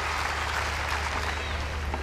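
Arena crowd applauding a gymnast's landed acrobatic series on the balance beam, the clapping thinning out toward the end.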